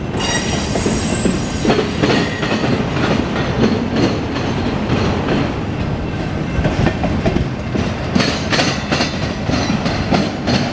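Autorack freight cars rolling past on a curve, their steel wheels giving a steady rumbling clatter over the rails. A thin high wheel squeal sounds at the start, and a quick run of sharp clacks comes about eight seconds in.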